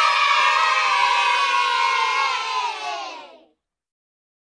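A group of children cheering together in one long shout, the pitch sagging slowly, cutting off suddenly after about three and a half seconds.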